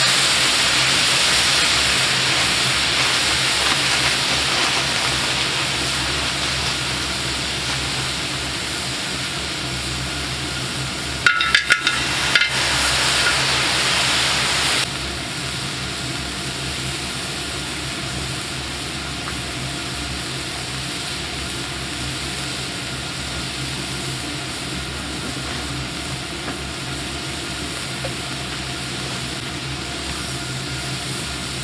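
Shrimp and shellfish sizzling and steaming on a large hot griddle, a steady hiss that slowly fades. A few sharp clinks about eleven seconds in, and the sizzle drops off suddenly a few seconds later.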